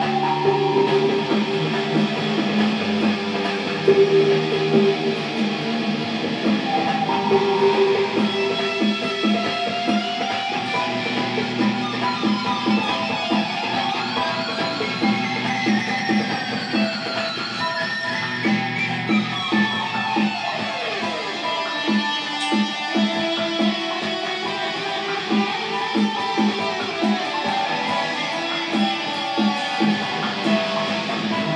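Electric guitar played live in a freestyle dubstep style over a DJ's steady electronic beat, with sustained notes and sliding pitches through the middle.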